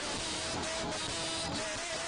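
A group of worship singers singing together with instrumental accompaniment, under a heavy steady hiss.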